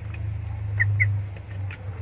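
White broiler chickens giving a couple of short, high peeps about a second in, over a steady low hum.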